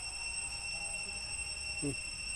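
A steady high-pitched drone made of several even tones, with faint voice-like sounds twice, briefly.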